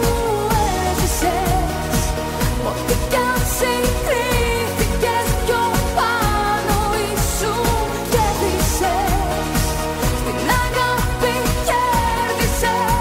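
Greek pop song: a singer's voice in wavering, ornamented lines over a steady dance beat and full band accompaniment.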